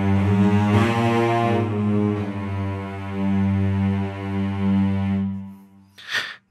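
Sampled cello section from the Soundiron Hyperion Strings Micro virtual instrument playing long sustained low notes, changing note about a second in and swelling louder and softer, then fading out just before the end.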